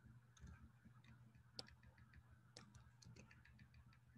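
Faint computer keyboard typing: irregular light key clicks, a dozen or more, over a low steady hum.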